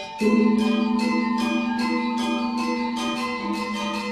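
Gamelan ensemble playing: struck bronze metallophones and gongs ring out in a steady stream of notes. A low gong-like tone comes in just after the start and keeps ringing with a slow wavering beat.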